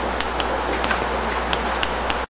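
Writing on a board during a lecture: light, irregularly spaced ticks and taps of the writing tool over a steady hiss and low hum in the recording.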